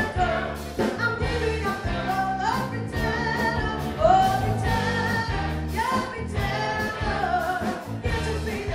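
A live band playing a song, with a woman singing lead over electric guitar, bass guitar and keyboards and a steady beat. Her voice slides up into several held notes.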